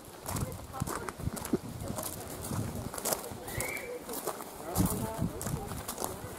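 Footsteps of someone walking, a string of irregular sharp steps, with people talking in the background and a brief high chirp a little past halfway.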